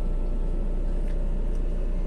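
Car engine and road noise heard from inside the cabin while driving, a steady low rumble.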